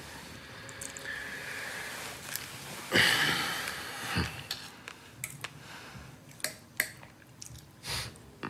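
Light clicks and taps of a knife and fork against a plate on a hospital meal tray, coming in a run in the second half. About three seconds in there is a short breathy sound from one of the people at the table.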